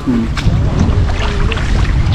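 Canal water sloshing and splashing around a person wading chest-deep and groping along the bank by hand for tilapia, with a dense low rumble and scattered small splashes.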